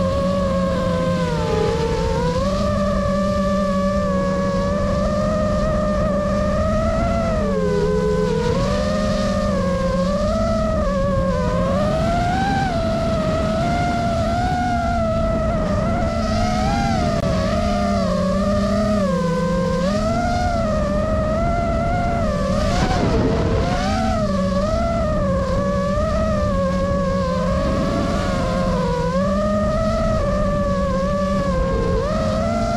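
FPV quadcopter's brushless motors and propellers whining, the pitch rising and falling continually with the throttle as the drone banks and swoops, over a steady rush of prop wash.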